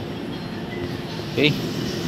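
Steady low background hum and noise, with no distinct event; a single short spoken word breaks in about a second and a half in.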